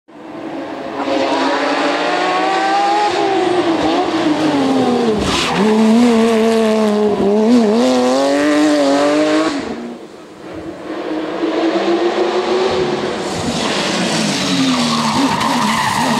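Porsche 911 GT3 rally car's flat-six engine revving hard, its pitch climbing and dropping with each gear change and lift through the bends, with tyres squealing in the corners. The sound dips briefly about ten seconds in, then the engine pulls up through the revs again.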